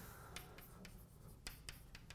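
Chalk writing on a blackboard: faint short taps and scratches, a handful spread through.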